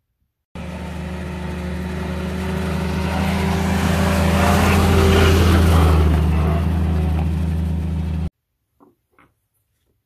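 WW2 military jeep engine running as the jeep drives, starting abruptly, swelling louder to a peak about five seconds in, then easing slightly before cutting off abruptly.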